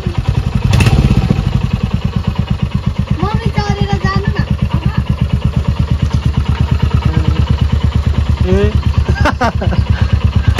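Motorcycle engine idling, a rapid, even beat that holds steady.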